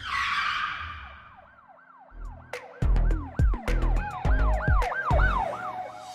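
Channel logo intro sting: a swoosh hit, then a siren-like tone warbling up and down about three times a second. Heavy bass thumps join in from about two seconds in.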